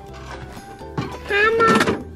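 Light background music, with a single knock about a second in as hands rummage in a metal toolbox, followed by a high child's voice saying "a hammer".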